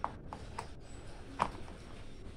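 Two light clicks about a second and a half apart as cables and the power plug of an opened LED TV are handled, over a low steady hum.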